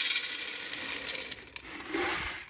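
Dry shelled corn kernels poured into the metal hopper of a small 1959 Meadows Mill gristmill, making a dense rattle of kernels striking metal. The rattle thins out and stops about a second and a half in.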